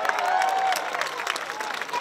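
Crowd applauding and cheering, dense clapping with voices calling out over it.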